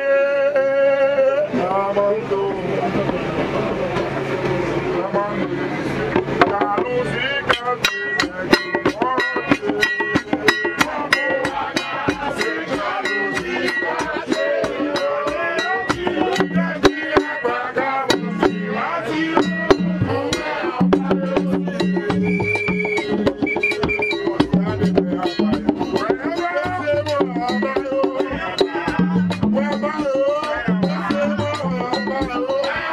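Vodou ceremonial music: voices singing a chant, joined about seven seconds in by a fast, even beat of drums and struck percussion that carries on under the singing.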